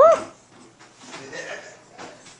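A short, loud, high-pitched vocal cry that rises and then falls in pitch right at the start, followed by fainter scattered sounds.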